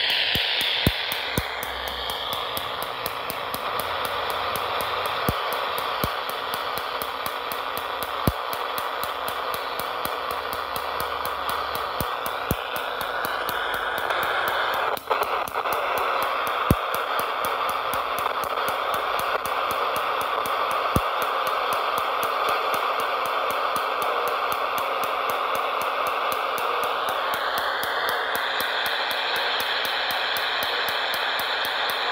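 Sangean SG-796 portable multiband radio receiver playing through its speaker, a steady signal full of hiss and static with shifting tones, and a sharp click every few seconds.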